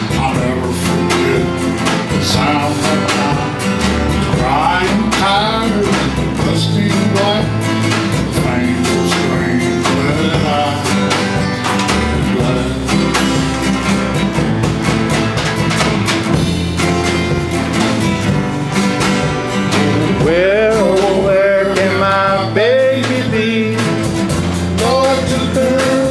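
Live country band playing a song: strummed acoustic guitars over electric bass and drums, with a singing voice at times.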